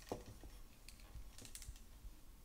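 A few faint clicks and handling noises as the clips of a plastic clip hanger are pinched open and fastened onto a t-shirt.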